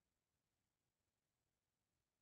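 Near silence: an empty audio track with no audible sound.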